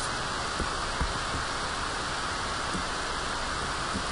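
Steady hiss of background noise on a poor-quality recording, with two faint clicks about half a second and a second in.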